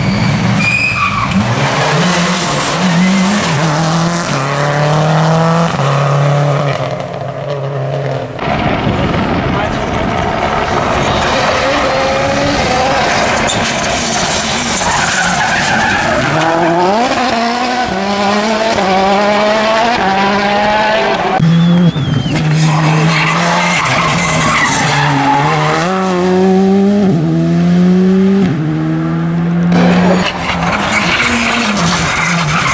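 Turbocharged four-cylinder rally cars accelerating hard through a corner, one a Citroën C3 WRC. The engine note climbs and drops in steps with quick gear changes, over tyre noise on the tarmac. There are three passes, with sudden breaks between them about eight and twenty-one seconds in.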